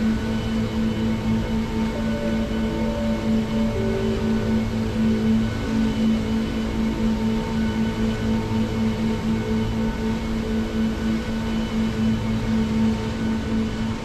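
Slow ambient music of long held drone tones, changing slowly, over the steady rush of river water.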